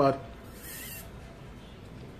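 A short sip through a plastic drinking straw, a hiss of sucked air and liquid lasting about half a second, beginning about half a second in.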